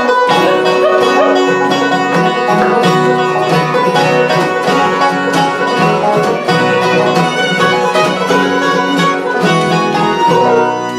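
Acoustic bluegrass band playing an instrumental passage, the banjo picking prominently over acoustic guitar, fiddle and upright bass.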